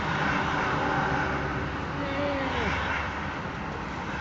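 Steady engine and road noise inside a motorhome's cab while driving in highway traffic. A faint tone slides down in pitch a little after two seconds in.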